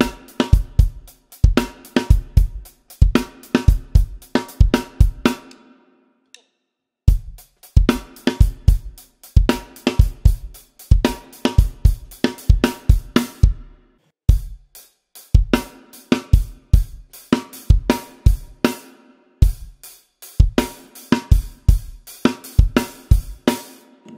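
A Mapex Orion drum kit with Zildjian A cymbals played solo: a busy rock verse groove of bass drum, snare and hi-hat, ending its last bar in a changed pattern. The playing stops for about a second some six seconds in, then carries on.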